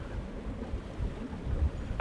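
Low, uneven rumbling ambience of wind and sea waves.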